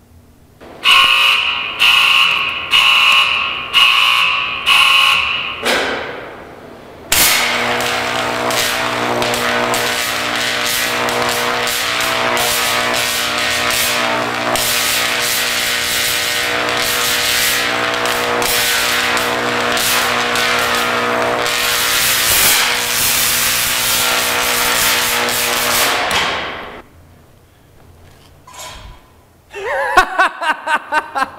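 High-voltage electric arc striking into a lump of play dough. It comes first as about five short buzzing bursts roughly a second apart, then after a short pause as a steady, loud buzz with crackling for nearly twenty seconds as the dough burns, cutting off sharply.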